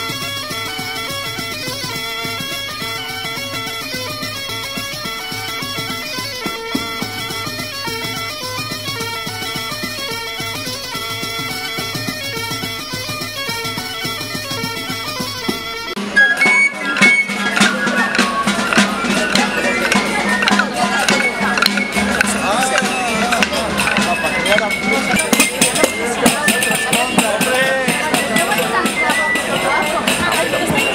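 Traditional folk music with a steady drone beneath a repeating melody. About halfway through it cuts to a louder street parade: wooden dance sticks clacking sharply and often, over crowd voices and music.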